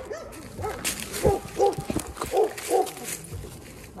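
Dog barking repeatedly in a quick string, about two to three barks a second, loudest in the middle.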